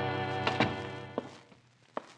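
A held organ chord, a music bridge between radio-drama scenes, fades out over about a second and a half. A few short knocks sound over it, the loudest about half a second in and another near the end.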